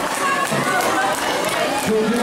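Crowd chatter: many overlapping voices talking and calling out at once, none of them clear, over a steady murmur.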